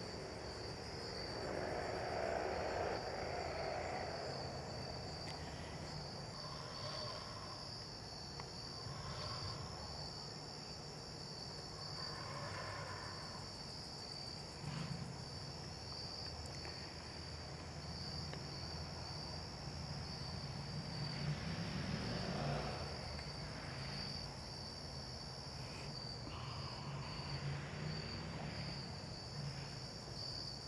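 A chorus of crickets chirping: a steady, high, pulsing trill that never lets up. Underneath it, faint low background noise swells now and then.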